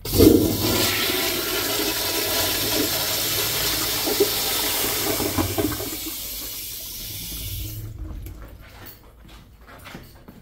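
Vintage Crane toilet flushed by its flushometer valve: a loud rush of water starts at once, eases after about six seconds into a quieter flow, and cuts off about eight seconds in.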